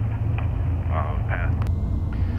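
Airship's engines running with a steady low drone, heard inside the gondola, with faint snatches of voices over it and a single click near the end.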